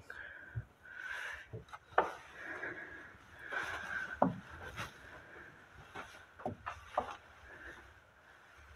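Footsteps, scuffs and creaks of someone walking over a debris-strewn wooden floor, with a run of short, sharp knocks, the loudest about two and four seconds in.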